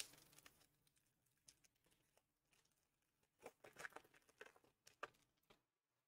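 Near silence, with faint soft clicks and rustles of trading cards being shuffled through by hand, bunched together in the second half.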